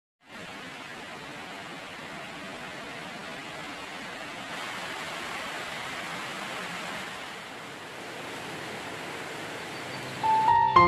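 Steady rain, an even hiss that starts a moment in, without separate drops or other sounds.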